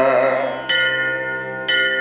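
Devotional music in a pause between sung lines: over a steady drone, a bell is struck twice about a second apart, each strike ringing on.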